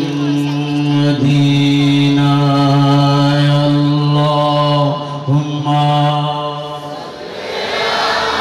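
A man's voice chanting through microphones in long, steady held notes, with a short break about five seconds in. Near the end, a crowd starts calling out.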